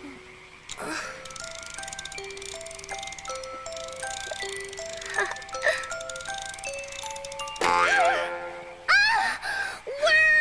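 Hand-cranked toy box playing a simple tune one note at a time as its handle is turned, like a jack-in-the-box. Near the end the tune gives way to a sudden loud burst as the box springs open, followed by rising squeals.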